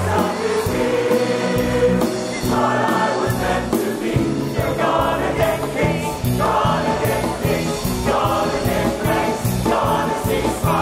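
A large men's chorus singing with instrumental accompaniment over a steady, regular beat, in a live stage performance.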